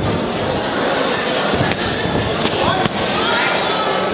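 Crowd voices shouting through a boxing bout, with sharp slaps of padded boxing gloves landing, the clearest two about a second and a half and three seconds in.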